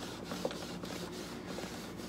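Damp melamine foam eraser sponge scrubbing a car seat's webbing harness strap: a quiet, steady rubbing with faint repeated strokes.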